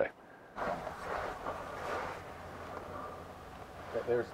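Faint steady low hum with light background noise, after about half a second of near silence.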